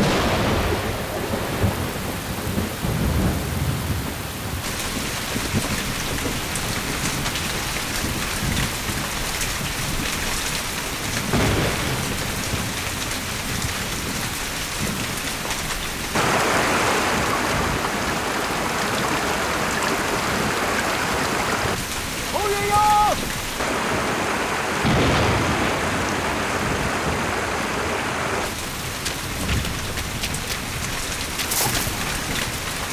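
Heavy rain pouring steadily, with thunder rumbling low underneath. The sound of the rain shifts abruptly several times.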